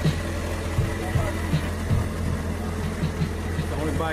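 Steady low rumble of a motorcycle engine idling, with faint voices and music in the background.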